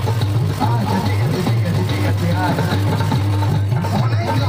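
Music played loud through the horn loudspeakers and speaker boxes of a sound system, a melody over a steady low drone.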